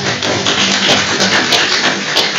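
Audience applauding in a meeting room: a dense, loud patter of many hands clapping.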